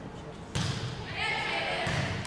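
A volleyball struck by hand on a serve about half a second in, followed by voices calling out from players and people in the gym.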